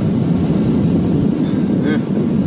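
Steady wind rumble on the microphone over the wash of surf breaking against the rocks, with a brief voice near the end.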